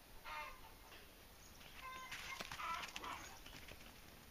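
Chickens clucking faintly: a short call just after the start, then a run of calls in the second half.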